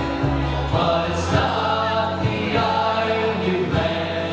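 Live Irish folk band playing a tune on acoustic guitars and electric bass guitar, with steady strummed rhythm.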